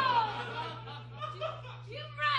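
Laughter on a comedy stage. A woman's voice slides down in pitch at the start, then fainter laughter follows, over a steady low electrical hum.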